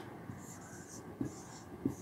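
Marker pen writing on a whiteboard: faint, high scratchy strokes in two short spells, with a couple of small ticks in the second half.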